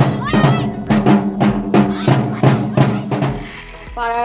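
Music with a steady, even drum beat over a sustained low tone, fading out near the end.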